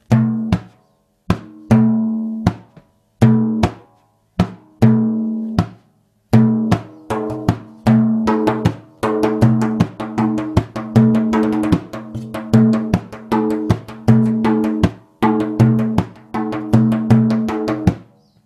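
Large hand-played frame drum playing the Maqsuum rhythm: deep ringing low dum strokes mixed with drier high strokes. It starts slow and sparse, then about six seconds in settles into a faster, steady pattern with quick filler strokes between the main beats.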